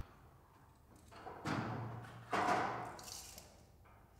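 Near silence for about a second, then a man's voice, quiet, in two short stretches.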